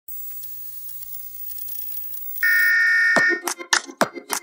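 Television static hiss, then about two and a half seconds in a loud, steady electronic beep tone. It cuts off with a falling swoosh, and intro music starts with a beat of sharp percussive hits.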